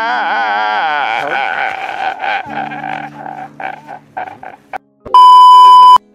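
A man laughing hysterically in a high, wavering wail that breaks into short gasping bursts and dies away. About five seconds in, a loud steady electronic beep sounds for about a second and cuts off abruptly.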